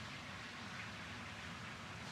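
Faint, steady background hiss with a low hum underneath: the open outdoor microphone's ambient noise in a pause between speech.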